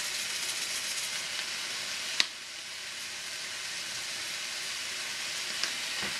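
Chicken and seasonings sizzling steadily in a frying pan on the stove, with a single sharp click about two seconds in.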